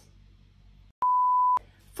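A single steady 1 kHz test-tone beep lasting about half a second, starting about a second in, with a click at its start and end. It is the reference tone that goes with TV colour bars.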